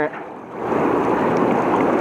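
Strong river current rushing and splashing, swelling about half a second in, as a small channel catfish is hauled up out of the water.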